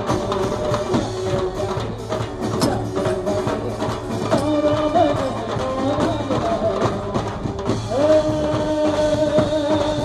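A live band playing dandiya music: drum kit, hand drums and a dhol keeping a steady beat under a melody that bends between notes and then holds one long note near the end.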